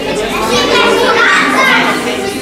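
Young children's voices speaking together, mixed with the talk of a crowd of adults.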